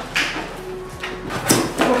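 A cardboard shipping box being cut open with a knife: scraping and rustling of the cardboard, with one sharp, louder tearing sound about a second and a half in.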